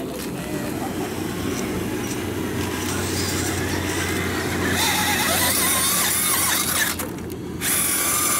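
Small electric motors and gearboxes of radio-controlled scale crawler trucks whining as they drive, over a steady low hum. A higher whine that wavers in pitch comes in about five seconds in and drops out briefly near the end.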